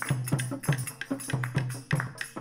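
Dholak played by hand in a steady folk rhythm, the deep bass head booming just under twice a second between sharper treble strokes, with tambourine jingles over it.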